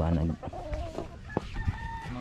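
A rooster crowing, one long call that starts about half a second in and ends in a drawn-out, level note. A voice is heard briefly at the very start.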